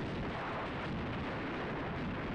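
Wind buffeting the microphone while riding in a moving vehicle: a steady, rough rumble with no pitched engine note.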